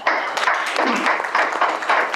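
A group of people applauding with dense, continuous hand clapping.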